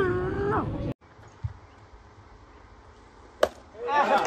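A person laughing, cut off abruptly about a second in, then quiet outdoor ballpark background. Near the end a single sharp crack of a bat hitting a pitched baseball, followed at once by people starting to shout.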